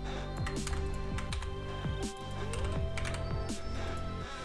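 Typing on a computer keyboard: an irregular run of key clicks over quiet background music.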